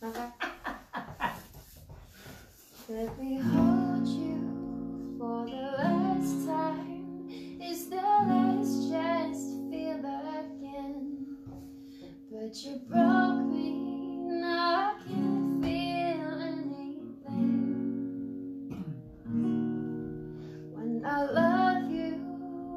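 Acoustic guitar with a capo, strummed in held chords that begin a few seconds in. A voice sings a melody over them soon after.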